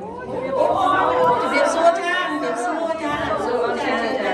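Several women talking at once, their voices overlapping in a lively chatter.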